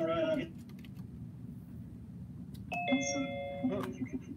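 A two-note electronic chime from the computer, like a doorbell, sounding for about a second near the end, with scattered clicks of keyboard typing and mouse use around it.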